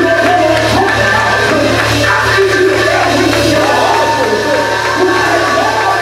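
Loud church music: a man's voice singing into a microphone over sustained held chords and a steady low bass.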